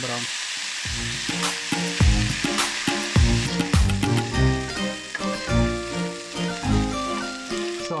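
Chicken pieces sizzling in hot vegetable oil in a stainless steel pan on high heat, stirred and turned with a wooden spatula as they brown. Background music plays along with it.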